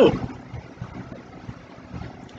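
Faint low background rumble, uneven and without any clear tone, in a pause between spoken words.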